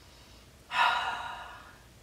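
A woman's long, breathy sigh of pleasure at a scent, starting suddenly about two-thirds of a second in and fading away over about a second.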